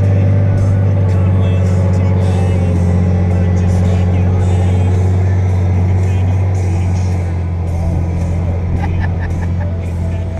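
Vehicle engine idling close to the microphone: a steady low hum that eases slightly about seven seconds in.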